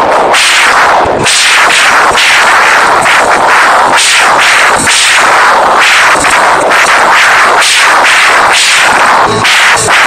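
Live rock band playing loud: electric guitars, bass and drums with constant drum hits. The sound is so loud for the phone's microphone that it stays pinned near full scale and comes out saturated and distorted.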